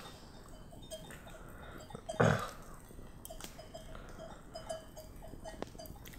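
Faint, evenly spaced tinkling of sheep bells, with one short low animal call about two seconds in and a few light campfire crackles.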